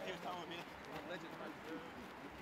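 Several men's voices talking and calling across an outdoor training ground, with no clear words.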